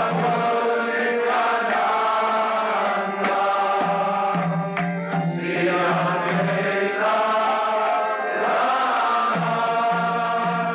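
A group of voices chanting a mantra together in a sustained, wavering melody, with a steady low tone under the voices that comes and goes.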